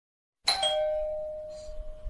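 Doorbell chime ringing once. It starts suddenly about half a second in, a brief higher note dropping to a lower one that rings on and fades away.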